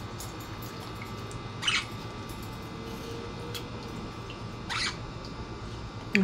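Budgerigar at a clip-on cage bath dish making two short, harsh sounds about three seconds apart, over a steady low background hum.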